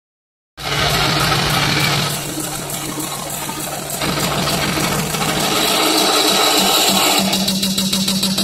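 Pregame hype music played loud over an arena's PA system, with a steady low drone under it. It starts about half a second in.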